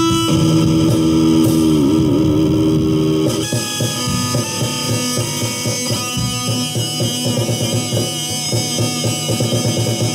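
Instrumental rock music with guitar. A held guitar note bends down and back about two seconds in. A little past three seconds, drums come in under the guitar with a steady beat.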